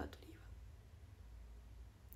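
The end of a spoken word, then a pause with only faint, steady low room hum.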